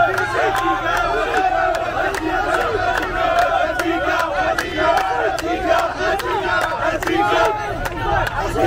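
A crowd of Moroccan football supporters and players chanting and singing together, with steady rhythmic hand claps keeping time.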